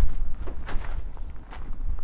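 Footsteps crunching on gravel, a step roughly every half second, over a low rumble on the microphone that is loudest at the start.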